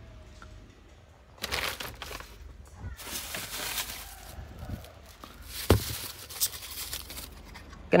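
Plastic bags and cardboard rustling and crinkling as hands dig through a pile of packed goods, in three bursts, with a sharp knock a little before the last one.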